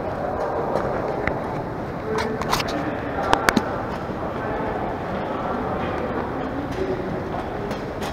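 A wire luggage trolley rolling across a tiled floor, a steady rumble with a few sharp metal clinks and rattles between about two and a half and three and a half seconds in, under the murmur of people's voices in a large hall.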